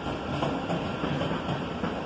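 Sprinter electric train rolling slowly along the rails, a steady rumble of wheels on track with a few light irregular knocks.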